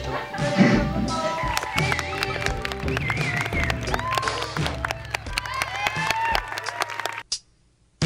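Audience applauding and cheering, with whoops, over background music; it all cuts off suddenly about seven seconds in.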